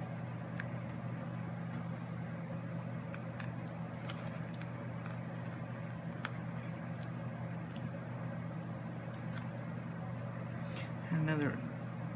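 Scattered light clicks and rustles of cardstock being handled as foam adhesive dimensionals are peeled and pressed onto a card layer, over a steady low electrical hum.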